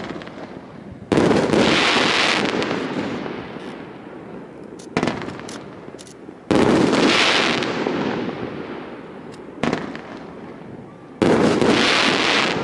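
Aerial firework shells: three times a short launch thump is followed about a second and a half later by a loud burst. Each burst fades slowly over several seconds with a hissing crackle.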